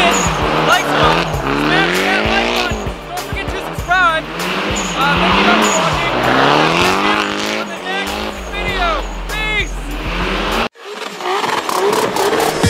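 Car engine revving up and down again and again, about every second or two, with tyres squealing and skidding as a car drifts in its own tyre smoke. The sound cuts off suddenly near the end.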